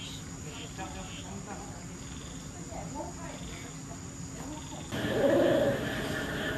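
Quiet background for most of it, then about five seconds in, a loud, low hoot of a spotted wood owl played from an exhibit display's speaker.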